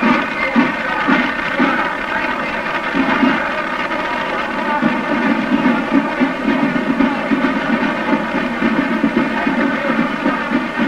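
Muffled parade din on an old film soundtrack, with a steady buzzing hum running through it. Beneath the hum is a fluctuating, rumbling noise of the passing parade.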